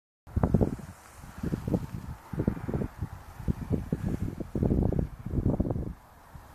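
Wind buffeting the microphone in irregular gusts, a low rumbling that surges and drops every half second or so.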